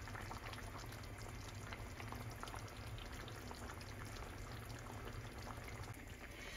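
Coconut-milk mutton stew simmering in a pan on the stove: faint, scattered bubbling pops over a steady low hum.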